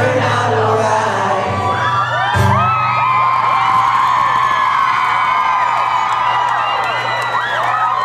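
The last notes of a live acoustic song fade away, and a little over two seconds in an audience breaks into high-pitched screaming and cheering that keeps going.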